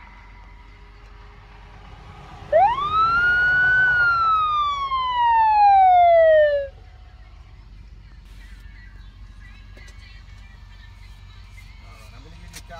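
A police siren gives one wail: the pitch rises quickly, then falls slowly over about three seconds and cuts off suddenly, over a low steady rumble.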